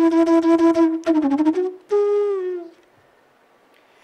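Bansuri (Indian bamboo flute) playing solo: a long steady held note breaks off about a second in, followed by a few quick notes with a dip in pitch, then a note that slides gently downward and fades into a pause near the end.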